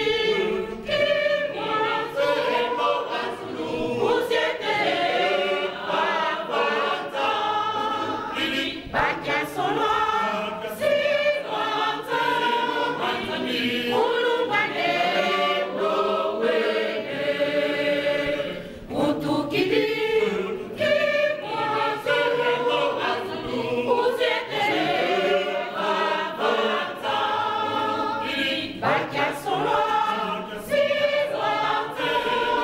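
A church congregation, mostly women's voices, singing a hymn together without pause.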